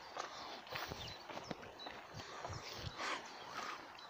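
Footsteps of someone walking on a gritty tarmac surface, a run of uneven soft impacts.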